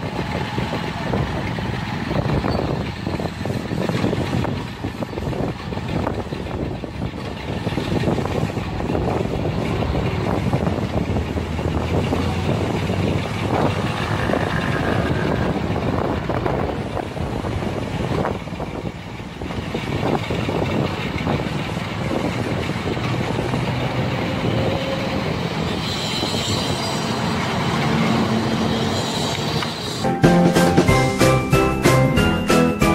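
A motor running steadily under loud street noise, with irregular knocks and clatter.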